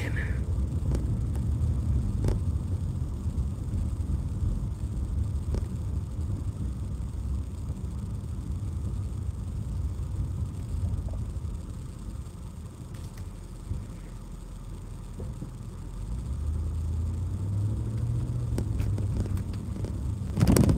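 A car's engine and road noise heard from inside the cabin while driving: a steady low rumble that drops for a few seconds past the middle, then swells again near the end.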